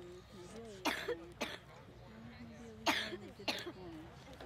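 A person coughing: four short coughs in two pairs, about two seconds apart, over faint background voices.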